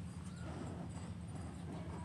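Steady low background hum with a few faint clicks over it.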